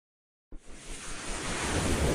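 Silence, then about half a second in a rushing whoosh sound effect starts abruptly and builds in loudness, the opening of an animated logo sequence.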